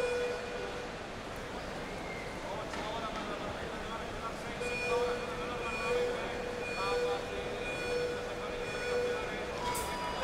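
Track-cycling start-clock countdown beeps: one beep at ten seconds to go, then five short beeps a second apart, and a longer beep at zero as the start gate releases. The low murmur of an arena crowd runs underneath.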